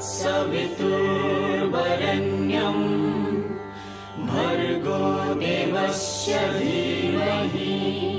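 Hindu devotional music: a sung mantra chant over a steady low drone, in long phrases with a short break about halfway through.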